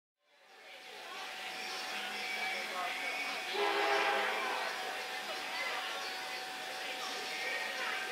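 Horn of an approaching Norfolk Southern SD60E locomotive, heard from far off: one short blast about three and a half seconds in, over a background of outdoor noise and faint voices. The sound fades in over the first second.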